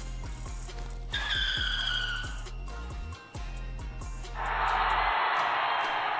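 Background music with steady low tones. About a second in, a falling whine comes over it for a second or so, and from about four seconds in a steady rushing hiss.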